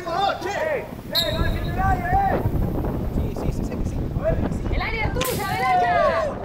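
Players' voices calling and shouting on an outdoor football pitch, over a low rumble of wind on the microphone, with a sharp short sound about a second in. The shouting rises near the end as a goal goes in.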